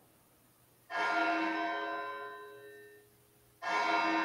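A large tower bell tolls twice, about three seconds apart. Each stroke rings out and slowly fades; the first comes about a second in and the second near the end.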